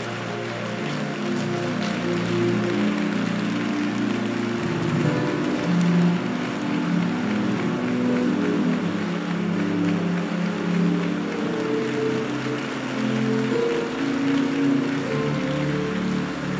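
A congregation praying aloud all at once, a steady mass of overlapping voices, over background music of held chords.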